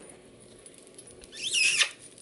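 A short, high-pitched squeal with a wavering pitch, about a second and a half in, over quiet room noise.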